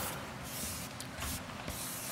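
Marker pen writing on a flip-chart pad: a faint, scratchy hiss in several strokes with short breaks between them.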